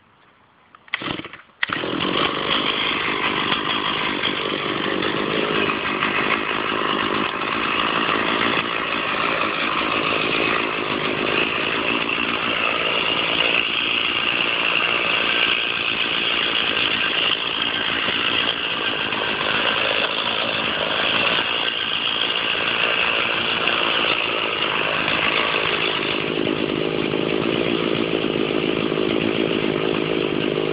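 Stihl chainsaw starting: a short first burst about a second in, then it catches and runs loud and steady while cutting into the trunk of an oak.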